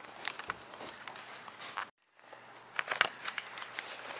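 Handling noise from a handheld camera being carried about: scattered clicks, rustles and crackles. It is broken by a moment of dead silence just before halfway, where the recording cuts.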